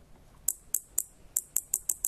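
Tiny 5-volt solenoid firing repeatedly, its plunger giving short, sharp clicks, about seven of them and coming faster toward the end, with no ringing note after them.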